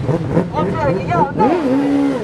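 A car engine accelerating past on the street, heard under raised men's voices, one of them holding a long drawn-out note near the end.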